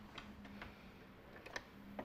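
A few faint clicks and taps from a sewing machine being handled as fabric is set under the presser foot, over a faint steady hum. Sewing has not started.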